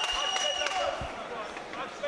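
Fight-venue crowd murmur and calls, with a few soft thumps and a thin, steady high tone through the first second.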